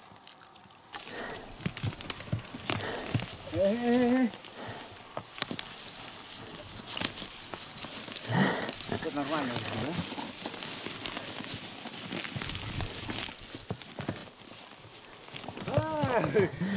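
Pack horses moving through dry brush: steady rustling with scattered small knocks of hooves and tack, and two short voice calls, one about four seconds in and one near the middle.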